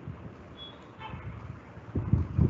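Low background noise from a laptop or webcam microphone on a video call, with one brief high beep about half a second in.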